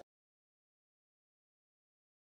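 Silence: the sound track is blank, with no sound at all.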